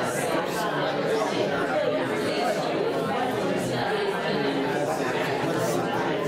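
Crowd chatter: many people talking at once in pairs, a steady hubbub of overlapping conversations with no single voice standing out, in a large room.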